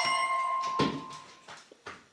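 A bell-like chime with several clear tones rings and fades away over about a second, followed by a few light clicks.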